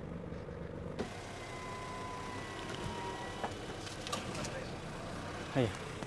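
Car engine idling steadily, low and even, with a brief voice-like sound falling in pitch near the end.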